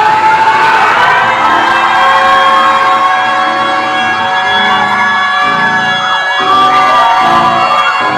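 Electronic keyboard holding a sustained chord, with low bass notes coming in about a second and a half in and changing every half second or so, under a congregation cheering and shouting.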